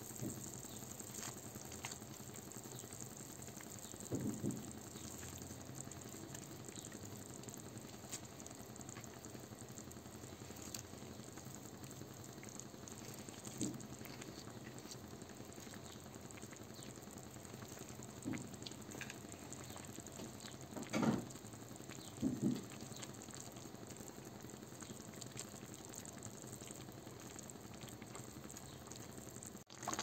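Tomato broth boiling in a pan, a faint steady bubbling, with a few brief louder sounds in the second half.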